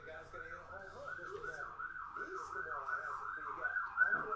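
Emergency vehicle siren in a fast up-and-down yelp, about three to four sweeps a second, slowly growing louder.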